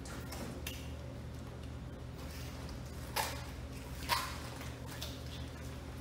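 A red drum being handled and turned over on a cutting table: faint wet knife and handling sounds, with two short knocks about three and four seconds in. A steady low hum runs underneath.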